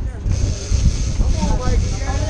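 Wind buffeting the microphone over the low rumble of a sportfishing boat's engines; a steady hiss comes in just after the start, and crew shout in the second half.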